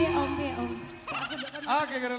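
A live band's music fades out. About a second in, a short voice-like logo jingle begins, with quick wavering pitch bends.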